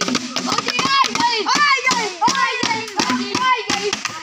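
Boys drumming fast, uneven beats on plastic bottles and clapping, with excited boys' voices calling out over the beat.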